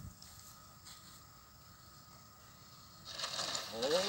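Near quiet for about three seconds, then a steady whir comes in sharply and keeps building: the small brushless electric motor and propeller of a foam RC trainer plane as it rolls along the asphalt runway. A man calls out just before the end.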